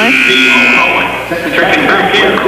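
Gym scoreboard horn sounding for just under a second at the start, signalling a substitution at a stoppage after a foul, followed by spectators' voices in the gym.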